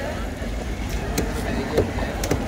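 A few sharp knocks of a large knife against a wooden cutting board while slicing seer fish, over a steady low traffic rumble and indistinct background voices.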